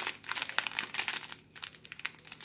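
Thin clear plastic bags of diamond-painting diamonds crinkling as they are handled, with irregular crackles that thin out after about a second and a half.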